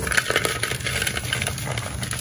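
Soft, dusty dyed gym chalk being crushed and squeezed by hand in a wooden bowl: a dense, crumbly crunching made of many fine crackles and small clicks.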